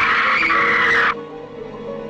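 A woman's long, shrill scream that rises at its start and breaks off about a second in, over horror-film score music with held notes.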